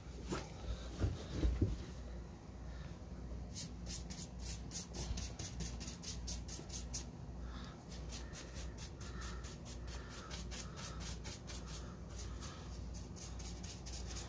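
A few soft knocks, then a paintbrush working paint onto a small wooden baseboard return: quick, even brush strokes at about four a second, starting about three and a half seconds in.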